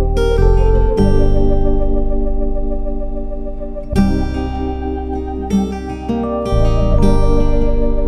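Background music led by plucked strings, with new notes struck every second or few over held tones.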